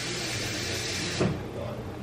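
Kitchen tap running water into an emptied sauce bottle, a steady hiss that cuts off a little over a second in, followed by a short knock.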